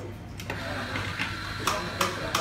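Quiet room noise with a low steady hum, faint background voices and a few sharp clicks or taps, one about a second in and two near the end.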